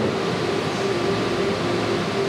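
Steady room noise: an even hiss and hum with a faint held tone underneath, in a pause between spoken prayer.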